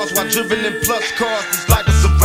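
Old-school gangsta rap track: a rapper's voice over a drum beat of sharp, evenly spaced hits and a deep bass line.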